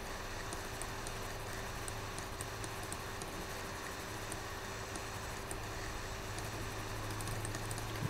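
Room tone: a steady low electrical hum and hiss from the recording chain, with faint scattered ticks.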